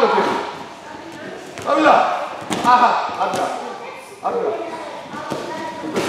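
Voices talking in short phrases, with a sharp knock about two and a half seconds in and another a little after three seconds.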